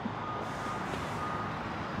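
A vehicle's reversing beeper sounding faintly, two short beeps at one steady pitch, over steady outdoor background noise.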